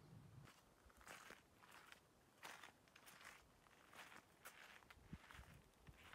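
Near silence with faint, irregular footsteps, roughly one or two a second.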